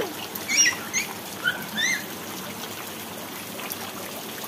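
Rain falling steadily onto standing water, an even patter and hiss. Within the first two seconds there are four short, high-pitched chirps.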